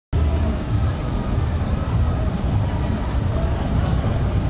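Steady low rumble of vehicle and street noise, with faint voices in the background.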